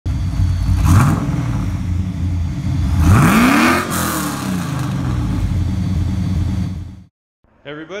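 Car engine revving: the pitch sweeps up sharply about a second in, sweeps up again around three seconds and falls back, then holds steady before cutting off suddenly near the end.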